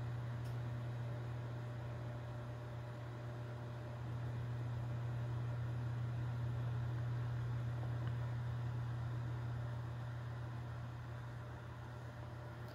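Steady low hum with a faint hiss behind it: room background noise, rising and falling slightly in level, with no sound from the spider itself.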